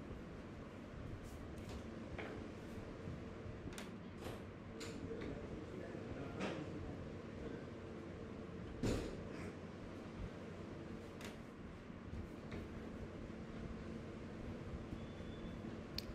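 Quiet room tone with a faint steady hum and scattered faint clicks and knocks. The loudest is a thump about nine seconds in.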